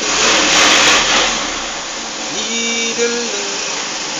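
A man's voice holding one long sung note about two and a half seconds in, over a loud steady rushing noise that is strongest in the first second.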